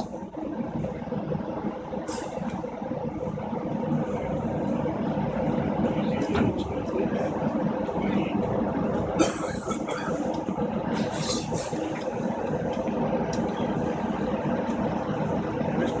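Steady drone of offshore platform machinery, several fixed hum tones held throughout, with a few brief clattering bursts now and then.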